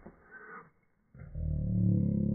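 A boy's voice making a deep, drawn-out vocal sound that starts a little over a second in and is held to the end, without clear words, after a short soft sound at the start.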